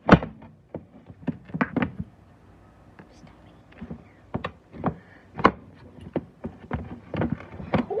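Handling noise: a run of sharp clicks and knocks, the loudest right at the start, with a quieter stretch about two to three seconds in before the knocking resumes.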